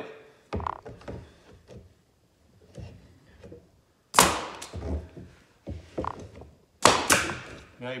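Pneumatic brad nailer firing brads into a wooden frame corner: three sharp shots, one about halfway through and two in quick succession near the end, with lighter knocks of the tool against the wood between them.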